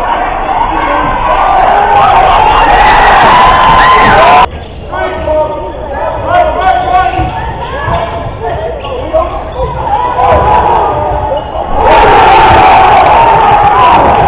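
Basketball game sound in an echoing gym: a crowd shouting and cheering over a ball being dribbled on the hardwood floor. The crowd noise is loud at first, drops suddenly about four and a half seconds in to scattered voices and bounces, and swells loud again near the end.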